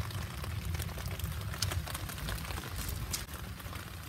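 Rain falling, with scattered short ticks of single drops over a steady low rumble.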